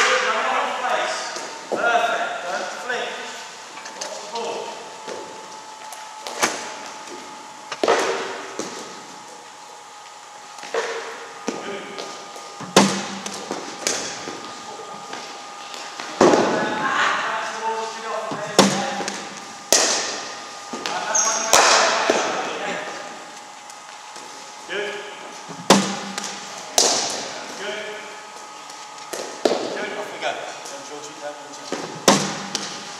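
Cricket balls striking the bat and bouncing on the net matting, a sharp knock every few seconds that rings in a large hall.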